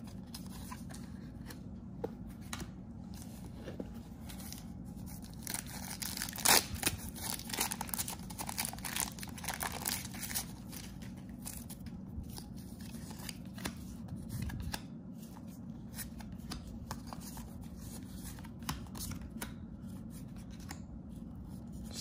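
Cardboard trading cards being handled and sorted by hand: irregular rustling, sliding and light taps as cards are laid onto piles, busiest between about six and ten seconds in, over a low steady room hum.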